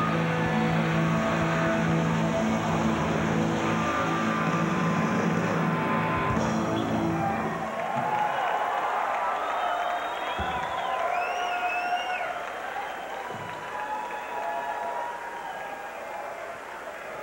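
A rock band's held closing chord on electric guitar and bass rings out and is cut off sharply about halfway through. A crowd then cheers and whistles.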